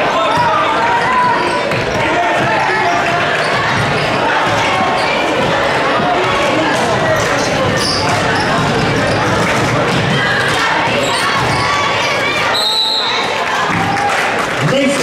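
Basketball game on a hardwood gym floor: a basketball dribbling, short high sneaker squeaks and steady crowd chatter in a large echoing gym. Near the end a referee's whistle blows once, briefly, stopping play.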